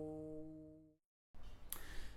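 Overtone singing: a held low vocal drone with its overtones standing out as steady tones, fading out about a second in. A brief dead gap follows, then faint room tone with a small click.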